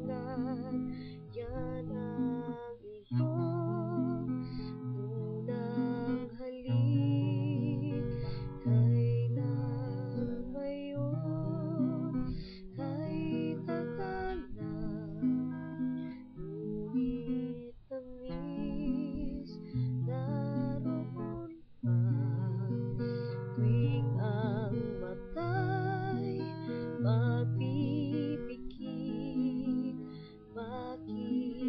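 Acoustic guitar strummed in steady chords while a woman sings a slow ballad over it, her voice wavering with vibrato on held notes.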